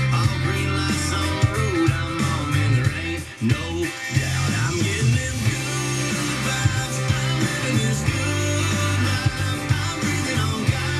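Country pop song with guitar, drums and a man singing, played on an FM radio through a portable boombox's speaker. The music drops out briefly about three and a half seconds in.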